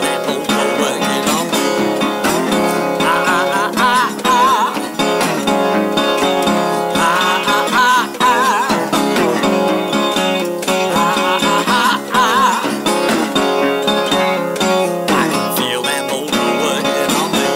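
A metal-bodied resonator guitar played solo, picked and strummed, with wavering high notes that bend in pitch several times.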